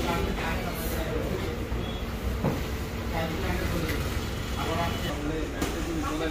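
Several people talking over a steady low rumble of vehicle engines.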